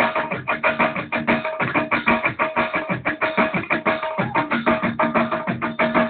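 Live Turkish folk dance music played on a Korg electronic keyboard, with a fast, steady beat of struck notes over held tones.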